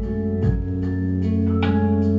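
Live band playing an instrumental passage between sung lines: long held keyboard chords with electric guitars, and a few sharp strummed accents.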